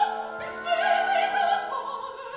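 Operatic soprano singing with a wide vibrato over sustained orchestral accompaniment. The voice breaks off briefly about half a second in, then takes up a new phrase that climbs higher near the end.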